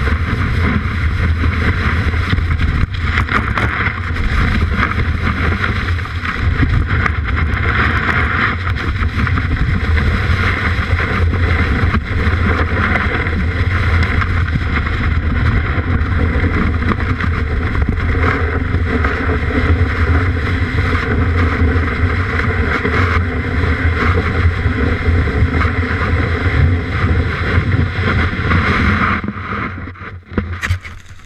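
Snowboard base sliding and scraping over snow, heard from a camera mounted on the board itself: a continuous rough hiss over a low rumble, with snow spraying against the camera. The sound drops away sharply just before the end.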